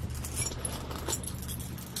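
A bunch of keys jingling lightly, in scattered faint clinks, over a low steady hum.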